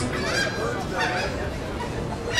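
Gulls calling: a few short, harsh cries over a background of people and open-air noise.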